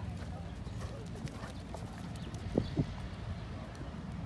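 Hoofbeats of a cantering horse on a sand arena, a string of soft knocks with two louder thuds about two and a half seconds in.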